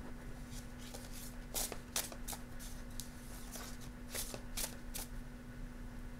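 A deck of oracle cards being shuffled by hand: a run of short, crisp card snaps and rustles at irregular intervals.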